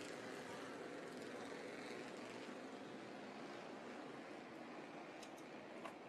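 Faint, steady running of Bandolero race cars circling the track slowly under caution, with a few faint clicks near the end.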